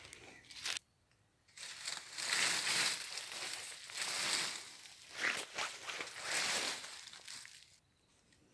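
Footsteps rustling and crunching through dry leaf litter and woodland undergrowth, in uneven swells, starting about a second and a half in.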